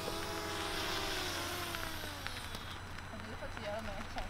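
DJI Mavic Mini drone's propellers whining as it comes down to land. About a second in the pitch falls and the whine dies away as the motors spin down.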